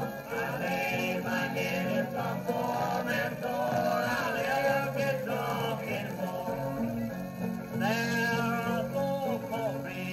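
Old-time string band recording playing from a Victor 78 rpm record on a turntable, with steady music running throughout.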